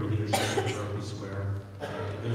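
A person coughing twice, once shortly after the start and again near the end, over a steady low hum.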